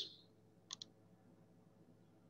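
Near silence broken by two quick, faint clicks in close succession, a little under a second in.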